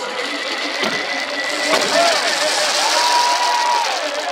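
A singer performing the national anthem over a stadium PA, with a swelling crowd noise from the stands. Near the end the singer holds one long note that falls away as it ends.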